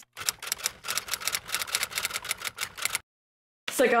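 Typewriter-style keystroke clicks in a quick, even run of about eight a second, lasting nearly three seconds and stopping abruptly.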